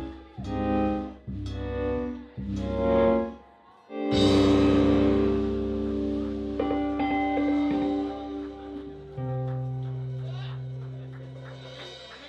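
Live blues band of electric guitars and drums ending a song: about four short chord hits, then a last loud chord with a cymbal crash about four seconds in that is held and slowly dies away.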